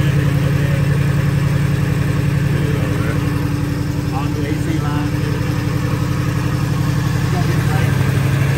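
1986 Oldsmobile Cutlass 442's 307 V8 idling steadily, heard close at the open engine bay. It is running smoothly, purring, after about three weeks of sitting.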